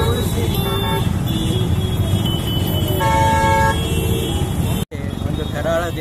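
Street traffic rumbling, with a vehicle horn sounding once for under a second about three seconds in. The sound cuts out for an instant near the end, and a man's voice follows.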